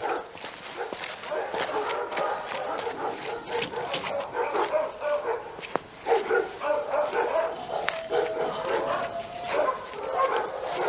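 Several kennelled dogs barking and yelping over one another, with one long, drawn-out cry near the end.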